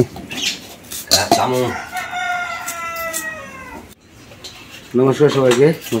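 A rooster crows once, a long call held for nearly two seconds in the middle that sinks slightly in pitch at the end. Short clicks of kitchen work and a few spoken words lie around it.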